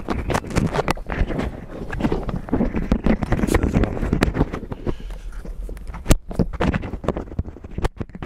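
Handling noise of a clip-on external microphone being unclipped and re-clipped: rubbing and rustling right on the mic with many irregular knocks and clicks, a louder knock about six seconds in.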